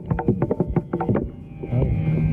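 Fast hand-drum strokes of a Carnatic thani avarthanam, the percussion solo on mridangam and kanjira. A rapid run of sharp strokes gives way near the end to a ringing low bass note with only a few strokes over it.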